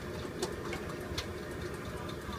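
A low, steady motor hum with a faint constant tone running through it, and a couple of faint clicks.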